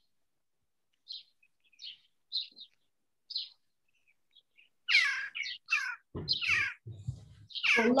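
Birds chirping: a run of short, high chirps, then louder calls that sweep downward in pitch from about five seconds in.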